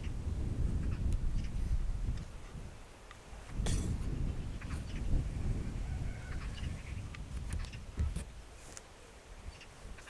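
Wind rumbling on the microphone in gusts, easing around three seconds in and again near the end, with a sharp knock a little under four seconds in and a few faint bird calls.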